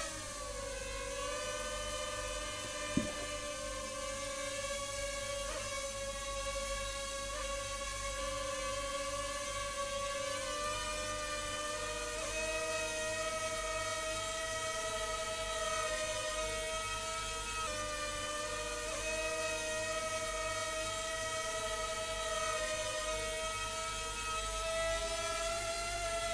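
Ryze Tello quadcopter's four propellers whining steadily in a hover, a stack of held tones that waver slightly in pitch as it yaws to keep the face centred. The pitch settles just after the motors spin up at the start and rises a little about halfway through.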